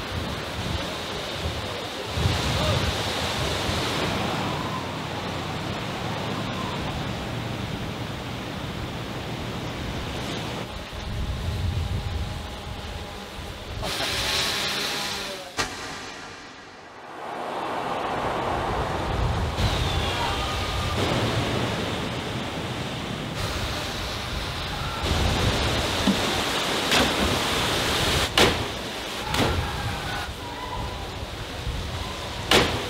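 Steady rush of sea surf and wind below rocky cliffs, dropping away briefly near the middle.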